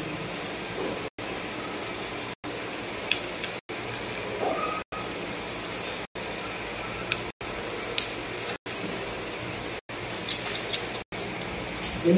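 Steady background hiss with a few faint, sharp clicks of small plastic beads being handled, several close together near the end. The hiss cuts out briefly about every second and a quarter.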